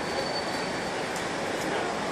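Steady city street background noise, a dense even hiss, with a thin faint high whine for about the first second.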